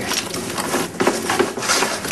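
A bag rustling and crinkling with irregular handling noise as a packaged ready-meal is pulled out of it.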